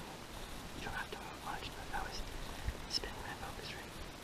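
A man whispering in short, breathy phrases, with a brief low thump about halfway through.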